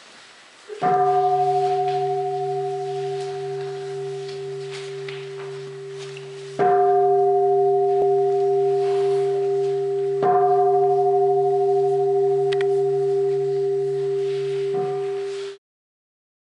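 Large black standing meditation bowl struck three times with a striker, each stroke ringing on in a long, wavering hum of several steady tones. The ringing cuts off abruptly near the end.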